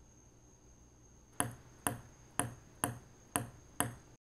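A ping pong ball bounced on a table top six times at an even pace of about two bounces a second, starting about a second and a half in, each bounce a sharp click.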